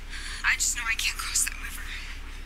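Speech only: a short line of dialogue from the TV episode being watched.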